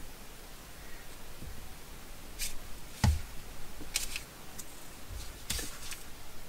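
Quiet handling of paper and a glue stick on a wooden desk: a few short paper rustles and one soft knock about halfway through.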